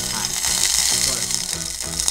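Background music with held notes over the steady sizzle of hot oil and rendered chicken fat in a nonstick pot where a chicken thigh was seared skin-side down.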